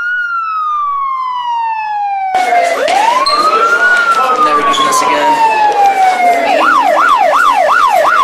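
Police siren: a long falling wail, then a rise and another slow fall, switching about six and a half seconds in to a fast yelp of about three sweeps a second.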